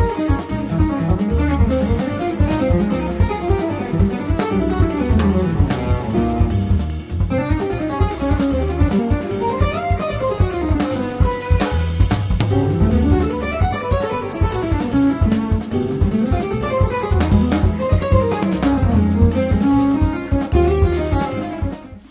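Headless electric guitar playing fast, intricate fusion lines with rising and falling runs, over a straight-ahead backing track with bass and drums.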